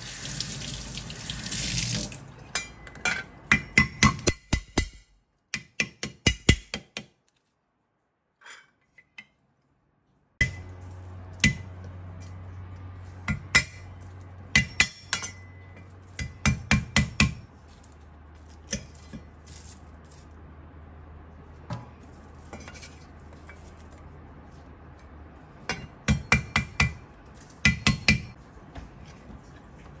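Water runs briefly into a steel sink, then a cleaver's flat blade is struck down hard on a wooden chopping board to smash lemongrass stalks and garlic cloves. The strikes are sharp knocks that come in quick bursts with pauses between them.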